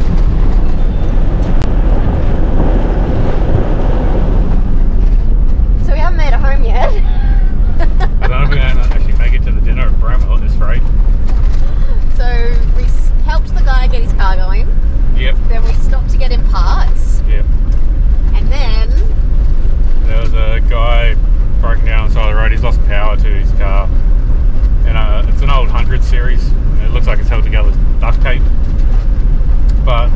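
Steady road and engine noise inside the cab of a Toyota LandCruiser 79 Series driving on a dirt road, loud and low. Voices come and go over it from about six seconds in.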